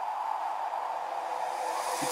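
Synthesised noise swell opening an electronic dance track: a filtered white-noise wash with no pitched notes that fades in, then holds steady and grows slightly louder near the end.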